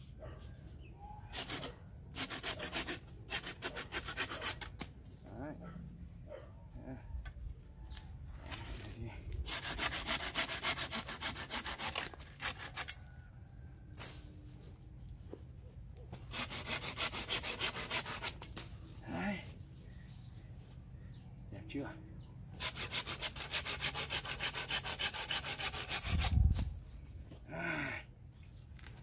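Hand saw cutting through a bougainvillea branch in several spells of quick back-and-forth strokes, with short pauses between spells. A dull low thump near the end.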